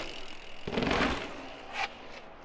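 Enduro mountain bike tyres rolling on paving, with a louder rush of noise for about half a second midway through.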